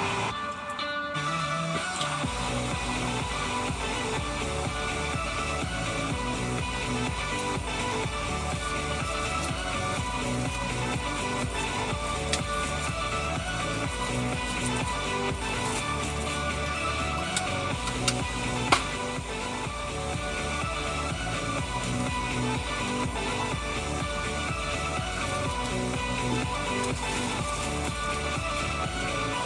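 A Top 40 pop song playing on an FM radio broadcast, with a steady beat. About a second in, the bass drops out briefly, as at a change between songs, before the full mix comes back.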